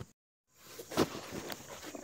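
After a brief dropout to silence, scraping and rustling with one sharp knock about a second in, as a spanner is worked on a propeller-shaft bolt under the car.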